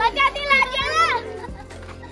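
Children at play: a child calls out in a high voice for about a second, then it goes quieter, over background music.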